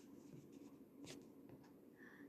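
Near silence: faint room tone, with one faint click about a second in.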